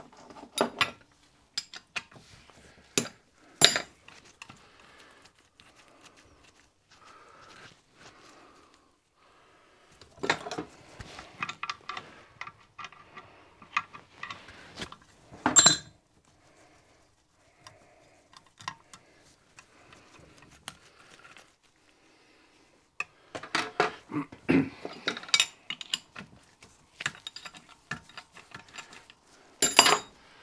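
Metal hand tools and small engine fittings clinking and knocking on a workbench as parts are handled and taken off, in irregular clusters with a few sharper single knocks, one about four seconds in and one in the middle.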